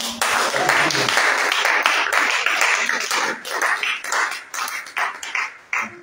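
Congregation applauding, dense at first and thinning to scattered claps in the last couple of seconds.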